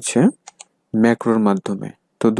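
Speech: a man's voice narrating, with two brief clicks about half a second in.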